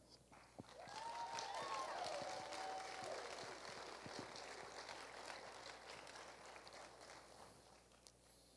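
Faint audience applause with a brief cheer near the start, dying away after about three seconds.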